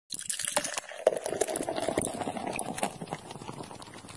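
Beer pouring into a glass: a splashing, bubbling stream that starts suddenly and dies away over the last second or so as the glass fills.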